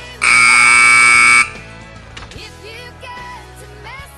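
An arena timer buzzer sounds one loud, steady blast of just over a second, starting sharply and cutting off suddenly, over background music.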